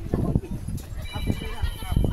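A run of dull, uneven thumps, a few a second, from footsteps and the handling of a phone carried while walking on stone steps. People are talking in the background.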